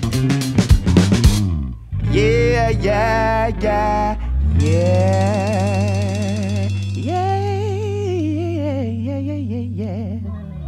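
Live funk band of electric bass, electric guitar and drum kit playing the close of a song. Drum hits drive the first second and a half, then a brief break. After it come wavering melodic phrases and a long held final chord that thins out near the end.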